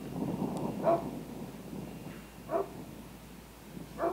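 A dog barks twice, about a second and a half apart, over a low rush of wind.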